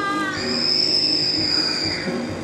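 A shrill, high-pitched shriek starts about a third of a second in and is held almost level to the end, with a fainter steady sound beneath it.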